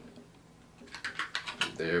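Small hard plastic clicks and rattles, a quick run of them about a second in, as a cartridge vape battery is worked out of its tight-fitting packaging insert.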